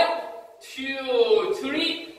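Speech only: a man's voice calling out in drawn-out syllables.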